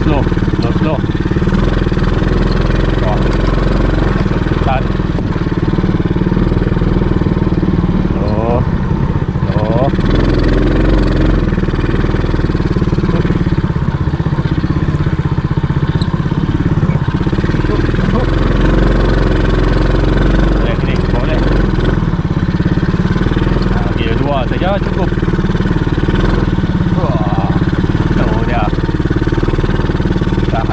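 Small ATV engine running steadily while riding along a bumpy dirt trail, heard from on board the machine.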